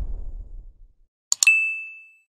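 Subscribe-animation sound effects: a low rumble fades out over the first second, then two quick clicks and a single bright bell ding that rings on as it decays, timed to the hand pressing the notification bell icon.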